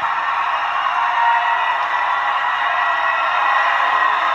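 Large rally crowd cheering and applauding steadily.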